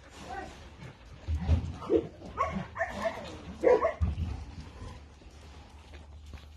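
Dogs barking, a run of short barks and yips between about one and four seconds in.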